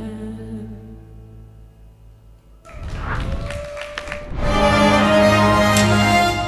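A young male singer's last held note over a backing track, which fades away over the first couple of seconds. About three seconds in, different music starts, swelling loud about halfway through.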